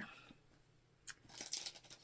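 Faint handling sounds as fabric pieces are put down and picked up: a single light click about a second in, then a short soft rustle of cloth.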